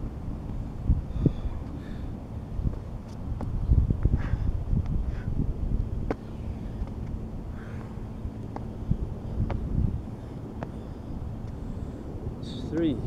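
Wind rumbling on the microphone, with scattered thuds of hands and shoes landing on a towel over concrete during burpees with push-ups.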